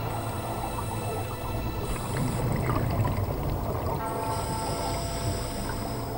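Scuba diver's regulator breathing underwater: a steady humming tone through the regulator, broken about two seconds in by a rush of exhaled bubbles, then the hum again from about four seconds.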